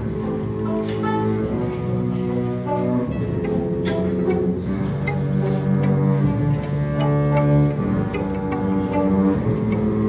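A violin and a second bowed string instrument played together in long, sustained notes, each held about a second, in a slow tune.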